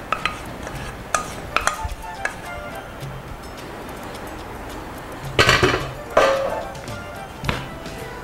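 Cookware clinks: a utensil and pans clink a few times in the first couple of seconds as potatoes are tipped from one frying pan into another. In the second half come three louder, noisier bursts of scraping or clatter, all over soft background music.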